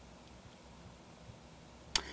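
Quiet room tone with a single short, sharp click just before the end.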